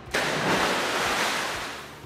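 A person jumping into a swimming pool: a big splash that starts suddenly and fades away over about two seconds.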